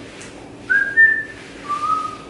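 A person whistling a few short notes of a tune: three brief whistled notes, the first sliding slightly up, the second a little higher, and the last lower, near the end.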